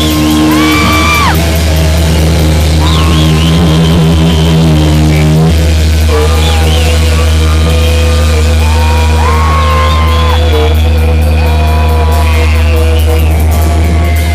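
Heavy rock band playing live: distorted guitars, bass and drums with held melodic lines over a heavy low end. The recording is loud and overdriven.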